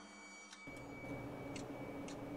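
Soft held background music ends just over half a second in. Faint regular ticking follows, about once a second and then quicker, over low room noise with a thin steady high tone.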